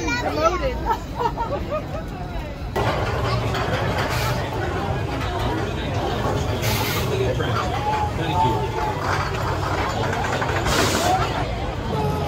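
Crowd chatter in a queue, then a sudden change to a steady low hum under dense background noise, broken by three short hissing bursts.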